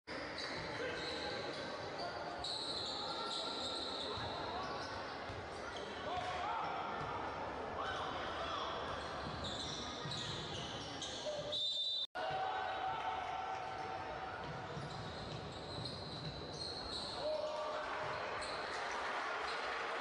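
Live court sound of a basketball game in a large hall: the ball bouncing on the hardwood, shoes squeaking and players' voices calling out. The sound cuts out for an instant about twelve seconds in.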